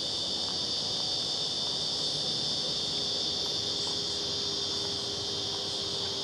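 Steady, high-pitched insect chorus, with a faint low steady hum coming in about halfway through.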